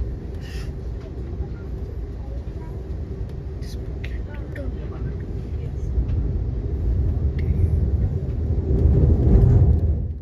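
Low, steady rumble of a passenger train crossing a steel truss bridge, heard from inside the car, growing louder over the last few seconds.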